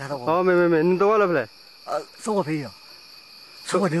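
An old man speaks in short phrases over a steady, high-pitched chirring drone of forest insects.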